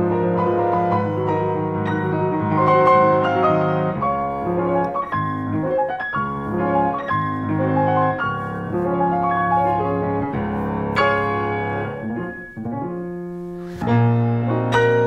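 Grand piano played solo: a flowing classical passage of sustained notes and chords, with an accented chord about eleven seconds in, a brief softening near the end and a loud chord as it closes.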